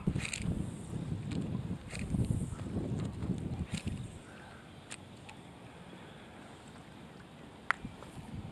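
Wind rumbling on the microphone for about the first four seconds, then a quiet stretch with a few faint clicks and one sharper click near the end, as a small crankbait is reeled in on a spinning rod.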